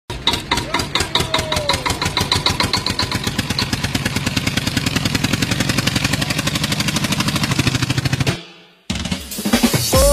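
An engine chugging in a rapid, even rhythm, about ten beats a second, with faint musical tones over it. It is a tractor-engine effect opening a dance track. It cuts off about eight seconds in, and after a brief gap the song's beat comes in near the end.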